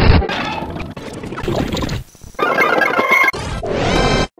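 Sped-up TV logo jingles: busy, high-pitched music and sound effects from one ident, breaking off about two seconds in, then a second jingle starting with a few held notes.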